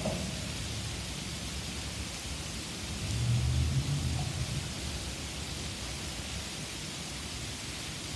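Steady hiss of hard rain falling, with a low rumble rising for about a second and a half a few seconds in.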